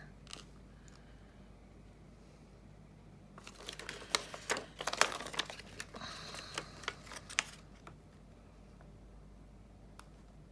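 Clear acetate sheet crinkling and clicking as it is flexed and pressed between the fingers, a cluster of small crackles for about four seconds in the middle; otherwise faint room tone.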